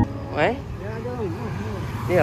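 Steady street traffic noise, with a person's voice speaking briefly in the first second.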